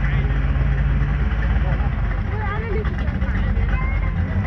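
An Audi S2 coupé and a Pontiac Trans Am idling side by side at a drag-race start line: a steady low engine rumble that turns uneven and pulsing about a second in. Faint voices sound under it.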